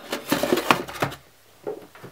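Handling noise of a small circuit board being pressed into a polystyrene foam box: a quick run of scrapes and light knocks in the first second or so, and a few more near the end.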